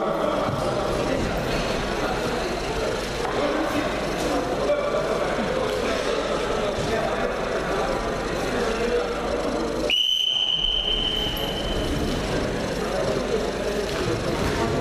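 Spectators' voices and shouts during a wrestling bout, with a referee's whistle about ten seconds in: one long, steady blast lasting about two seconds.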